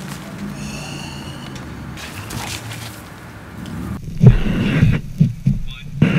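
A large pile of burning match heads hissing as it flares. From about four seconds in come louder, irregular gusts of rushing noise.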